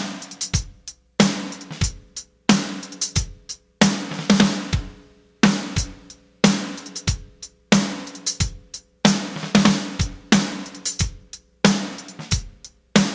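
Acoustic drum kit played with sticks in a short repeated phrase: a loud accented hit about every second and a quarter, followed by a few lighter strokes and a brief gap before it starts again, with cymbals and drums ringing after each accent.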